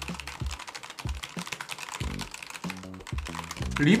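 Fast typing on a computer keyboard: a rapid, uneven run of key clicks, over background music.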